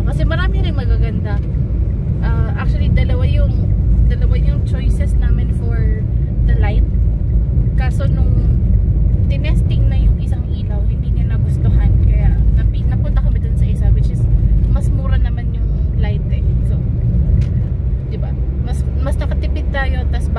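Steady low rumble of a car's engine and tyres on the road heard from inside the cabin while driving, under a woman talking throughout.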